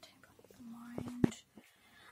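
Soft whispering, then a short low hum, with two sharp taps a little after a second in; the second tap is the loudest sound.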